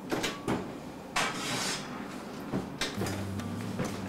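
Oven door being opened and a metal baking sheet pulled out of the oven: several short clicks and clanks, with a brief scraping rush about a second in.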